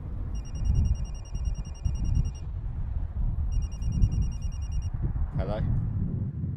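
A mobile phone ringing: two rings of a high, trilling electronic tone, each about two seconds long, over the low rumble of a car cabin.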